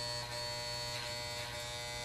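Electric hair trimmer running with a steady buzz as it cuts a design into short hair along a stencil.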